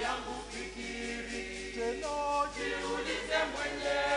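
Church choir singing a Swahili hymn, several voices in harmony, with a new phrase starting about two seconds in.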